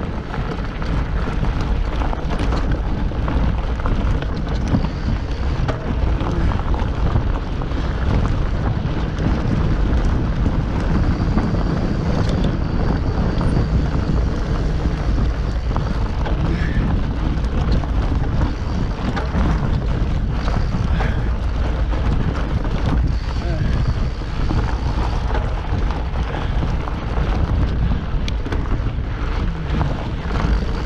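Wind buffeting the microphone over the steady rumble and rattle of a mountain bike rolling along a dirt forest trail, with small clicks and knocks throughout.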